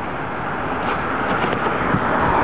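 Road traffic: a car's steady tyre and engine noise, growing slowly louder.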